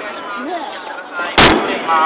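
A single loud bang from an aerial firework shell about one and a half seconds in, over a crowd of spectators talking.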